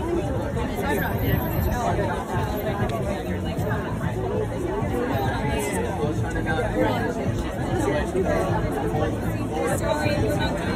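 Several people talking at once in overlapping conversation. No other distinct sound stands out.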